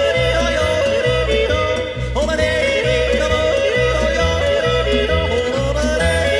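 Tyrolean folk song: a singer yodelling over a steady, bouncing bass accompaniment.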